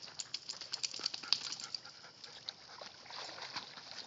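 Two dogs swimming and meeting in open water, their paddling making quick, sharp splashes and spatters. A dense run of splashes comes in the first two seconds and another cluster a little after three seconds.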